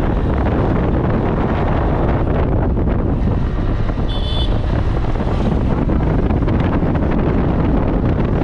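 Wind buffeting the microphone over a motorcycle running steadily at road speed, heard from the pillion seat. A brief high tone sounds about four seconds in.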